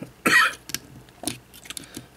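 Small plastic LEGO bricks rattling and clicking as they are handled and pressed onto a model: one louder rattle about a quarter of a second in, then a few light clicks.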